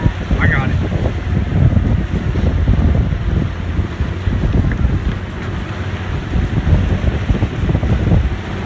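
Wind buffeting the microphone on a boat underway, over the rush and splash of its bow wave and a low steady hum.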